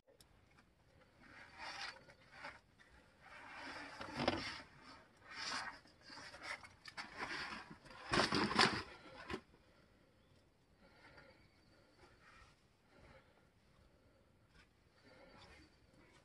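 Rubbing and scraping as a hiker and her backpack squeeze through a narrow crack between granite boulders, in irregular bursts over the first nine seconds or so, the loudest near the middle; after that only a few faint scuffs.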